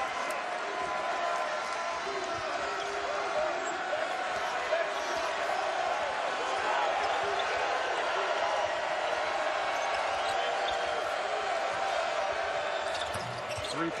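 Steady crowd chatter in a basketball arena, with a basketball being dribbled on the hardwood court.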